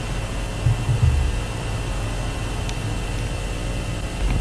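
A steady low hum with an even hiss over it, and a couple of soft low bumps about a second in.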